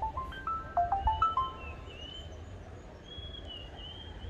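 A short electronic melody: clear pure notes stepping up and down quickly over the first second and a half, then fainter, higher gliding notes.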